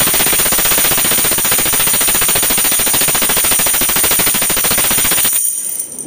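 Tambourine shaken continuously, its metal jingles rattling in a fast, dense stream with a steady high shimmer, stopping shortly before the end.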